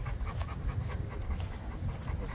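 Two Cane Corsos panting quickly with their tongues out, hot from walking in the sun.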